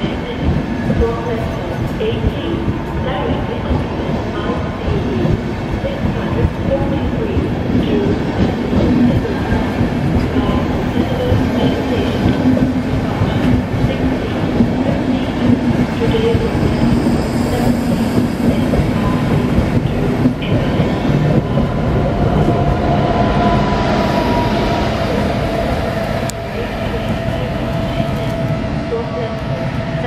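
Intercity passenger coaches rolling past on the track beside the platform, a steady rumble of wheels on rails. Over the last few seconds a steady electric whine comes in as the DB class 101 electric locomotive at the train's end draws near.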